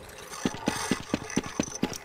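Cartoon mechanical sound effect: regular clicks, about four or five a second, over a rattling whir, going with a net being extended out of a box.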